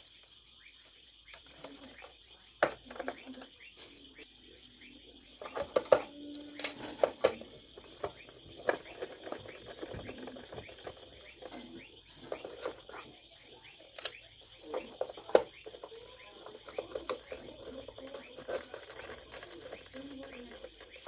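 Clicks and knocks of a plastic portable radio cabinet being handled, turned over and set down on a workbench, with a screwdriver working the screws on its back cover. A steady high-pitched tone runs underneath throughout.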